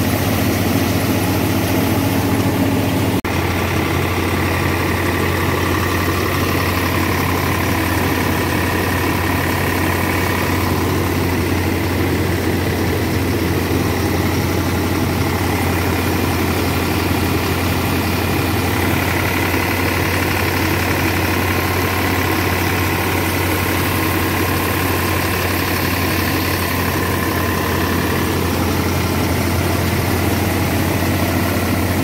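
Eicher 485 tractor's three-cylinder diesel engine running steadily under load as it drives a thresher through its PTO shaft, the thresher's hum mixed in. The sound changes abruptly with a short dip about three seconds in.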